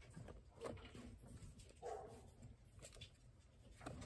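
Near silence, with a few faint scattered clicks and one brief faint pitched sound about two seconds in.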